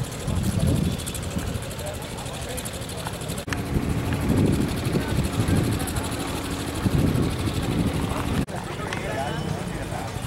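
Indistinct background voices over a steady low rumble. The sound breaks off abruptly twice, at edit cuts.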